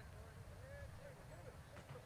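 Faint, distant voices over a low, steady rumble.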